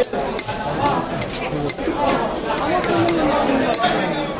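Overlapping background voices of market chatter, with short scrapes and clicks of a knife scaling a large katla fish.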